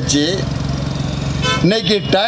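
A motor vehicle's engine running steadily for about a second between bursts of a man's amplified speech.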